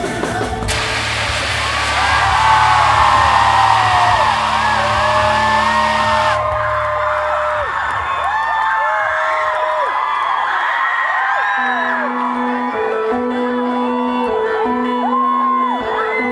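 Concert crowd cheering and screaming as a live rock song ends, many high whoops over the noise, with a held low bass note underneath that dies away about ten seconds in. Near the end a repeating keyboard note pattern starts while fans keep screaming.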